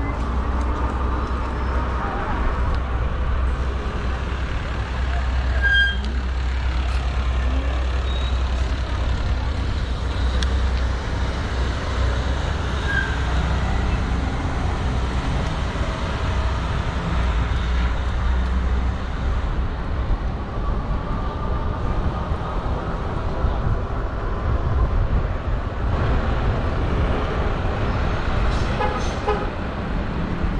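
Steady low wind rumble on the microphone of a camera riding on an electric bike, over street traffic noise.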